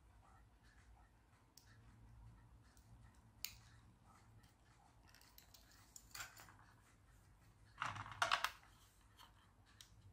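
Faint cutting and handling sounds: a snap-off utility knife trimming the stem of a clear plastic suction cup, with small clicks, then two louder short scrapes near the end as the cups are picked up and handled on the wooden table top.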